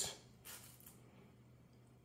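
Near silence: faint room tone with a low steady hum, broken by one brief soft rustle about half a second in.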